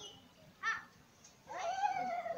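Two short high-pitched vocal calls: a brief one about half a second in, and a longer one starting about one and a half seconds in.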